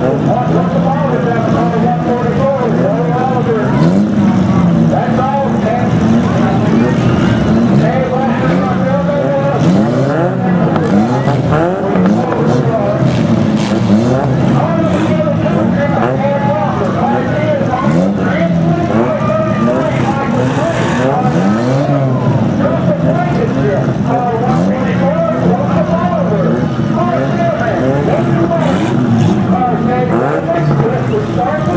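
Several demolition-derby mini cars' engines running at once, revved repeatedly so the pitch keeps rising and falling, over the murmur of a crowd.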